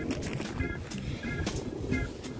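Background music with short, evenly repeated high notes, over faint clicks and rustling of trading cards being handled.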